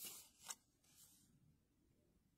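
Lenormand cards sliding against each other as one card is moved off the deck: a short rubbing swish that ends in a light snap about half a second in, then near silence.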